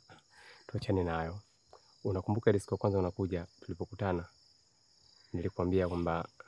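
Steady high-pitched insect chirring, unbroken throughout, under spoken dialogue.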